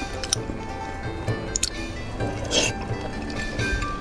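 Background music over close-miked wet chewing of raw salmon sushi, with a few short, sharp mouth clicks, the loudest a little past halfway.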